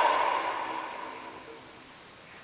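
The cartoon's soundtrack fading out through laptop speakers, dying away over about a second and a half to a faint hiss.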